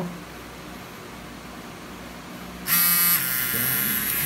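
Cartridge tattoo machine fitted with a 13RM needle switched on about two-thirds of the way in, starting with a sudden high electric buzz that is loudest for a moment and then settles into a steady run.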